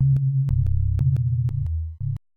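Synthesized electronic music: a continuous run of very low, sine-like bass notes stepping quickly from pitch to pitch, with a click at the start of each note.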